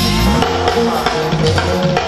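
Live pop band playing through a PA system: a drum kit keeping a steady beat under electric guitar and bass.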